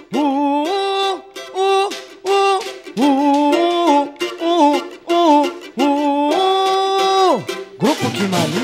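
Male singer opening a pagode song with wordless 'uh' syllables in short sung phrases, the last note held about a second before sliding down. The full band comes in right at the end.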